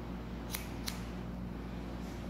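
Barber's scissors cutting hair held between the fingers: two quick snips about a third of a second apart, over a steady low hum.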